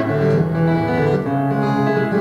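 Taylor acoustic guitar being played, a slow run of ringing notes that change about every half second.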